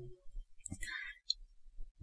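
Faint mouth clicks and a soft breath from a male speaker between phrases.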